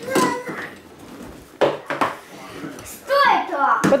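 Metal tube frame of a folding bathtub knocking and clinking a few times as it is handled, about a second and a half in and again near the end, among children's voices.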